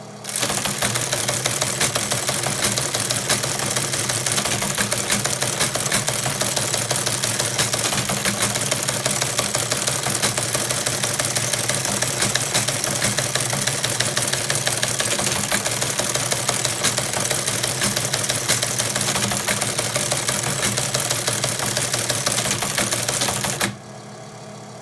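Teletype Model 15 teleprinter printing a run of text: a rapid, even mechanical clatter over a steady motor hum. It starts just after the beginning and stops just before the end.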